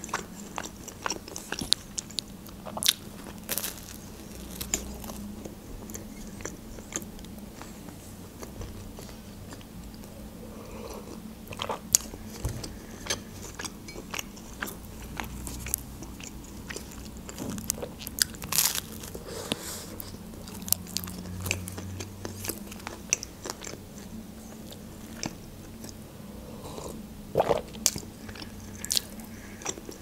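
Close-miked chewing of a soft canteen-style pizza bun, with many small wet mouth clicks scattered throughout.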